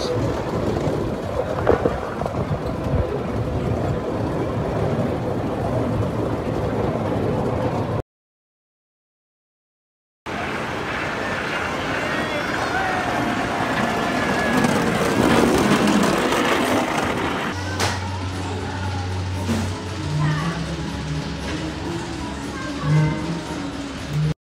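Open car of a small amusement-park coaster running along its track: a steady rumble and rattle with wind on the microphone. After a break, the car is heard running along the wooden track from beside it, with voices, and from about two-thirds of the way through a few steady low tones that sound like music.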